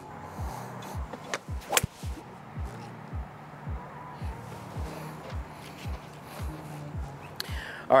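Background music with a steady low beat, about two beats a second. About a second and a half in, a single sharp crack as a Titleist TSR fairway wood (three wood) strikes a golf ball off the tee.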